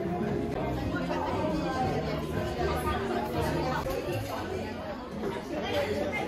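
Indistinct chatter of many diners talking at once in a busy restaurant, steady throughout.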